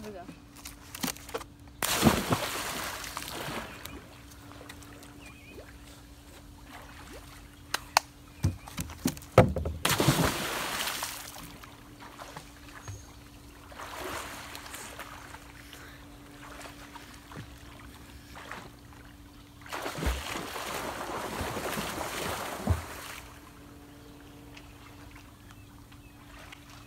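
Splashes of people jumping off a diving board into a swimming pool: a big splash about two seconds in, another around ten seconds, a smaller one near fourteen seconds, and a long churning splash around twenty seconds, with water sloshing between them. A few sharp knocks come just before the second splash, over a steady low hum.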